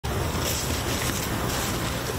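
Wind buffeting the microphone: a steady rushing noise with a low rumble underneath.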